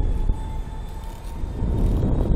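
Wind buffeting the microphone of a camera mounted on a slingshot ride capsule as it swings in the air. It is a low rumbling rush that swells again near the end.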